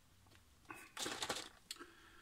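Cardboard milk carton handled and lifted in the hand: a short burst of rustling, crinkling scrapes about a second in, with a brief one just after.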